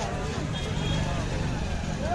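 Street background of voices talking nearby over a steady low engine rumble, which grows a little stronger in the second half.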